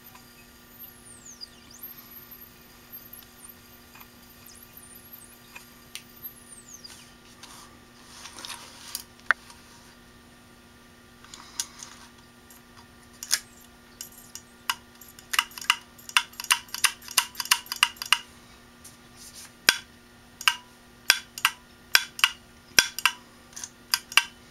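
Opened Maxtor DiamondMax 9 IDE hard drive with a steady hum, then from about halfway a run of sharp clicks, rapid for a few seconds and then spaced out. This is the read/write head actuator clicking, the "click of death" of a failed drive whose platters won't spin up.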